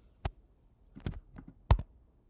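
A handful of sharp computer keyboard and mouse clicks at uneven spacing, the loudest about three-quarters of the way through, as a number is typed into a software field.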